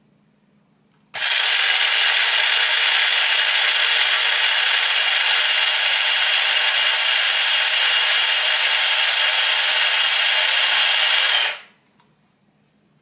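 Mr. Coffee electric coffee grinder running, grinding coffee beans: a loud, steady whirring that starts about a second in, holds even for about ten seconds, then stops.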